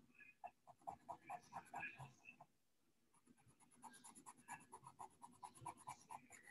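White pencil scratching faintly on paper in quick short shading strokes, about six a second, with a pause of about a second midway, as highlights are laid in.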